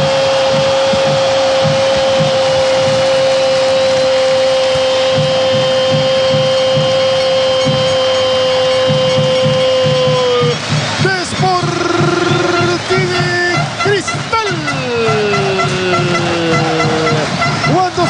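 Football commentator's goal cry: one long held note, steady for about ten seconds and sagging slightly at the end, followed by more excited shouting with swooping pitch.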